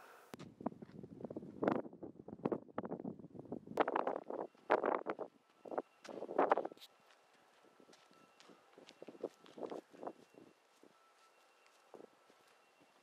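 Uneven footsteps on pavement with wind on the microphone for the first several seconds, then a few faint knocks.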